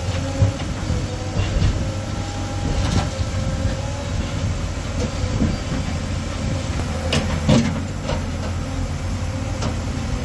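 Diesel engines of a backhoe loader and an excavator running steadily, with several sharp knocks and clanks, the loudest pair around seven seconds in.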